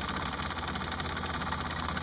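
Mamod SP4 stationary steam engine, a single oscillating cylinder, running steadily and fast while it drives a small grinder through a spring belt. The grinder wheel is being held back by hand, and the belt is probably just slipping on its pulley.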